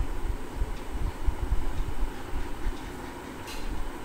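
Low, uneven rumbling noise with no speech, its energy mostly in the bass.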